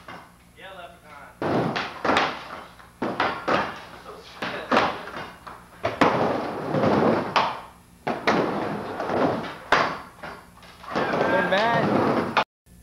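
Skateboard riding a wooden mini ramp: wheels rolling over the plywood, broken by a rapid series of sharp clacks and slams as the trucks hit the coping and the board lands back into the transition, on an old camcorder recording. Voices call out briefly near the start and near the end.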